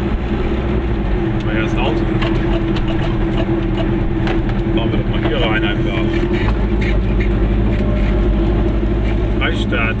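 A car's engine and road noise heard from inside the cabin while driving, a steady low hum.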